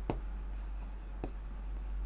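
Pen strokes scratching on a writing board as words are written out, with a couple of faint clicks of the tip touching the board.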